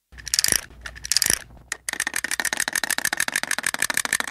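Cartoon sound effect of a small wind-up toy: two short winding sounds, then from about two seconds in its clockwork runs with a fast, even clicking.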